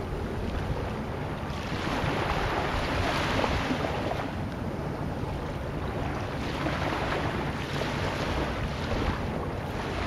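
Sea ambience: wind and waves washing in slow swells that rise and ease every few seconds.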